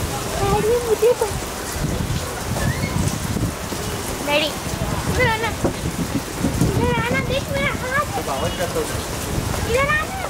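Steady rain falling, with scattered distant shouts and calls from players on the pitch.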